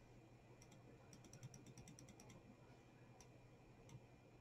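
Near silence: room tone, with a quick run of faint light ticks in the first half and two single ticks later.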